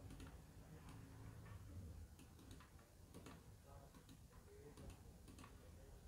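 Near silence with faint, irregular clicks of a computer mouse.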